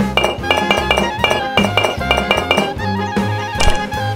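Background music with a steady beat, a bass line and plucked melody notes.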